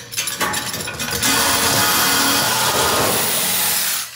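Corded power saw cutting through a car's steel exhaust pipe from underneath: a rapid rattle for about a second, then a loud steady cutting noise that stops near the end.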